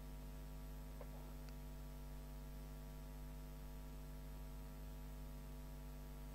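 Steady low electrical mains hum with a stack of overtones, unchanging throughout, with a couple of faint ticks about a second in.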